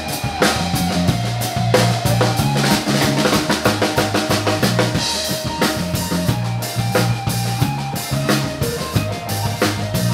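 Live band playing amplified music with electric guitar, electric bass and a drum kit, with the drums prominent as a steady run of hits over held bass notes.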